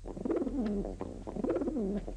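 A pigeon cooing: two throaty, wavering coo phrases, the second about a second after the first.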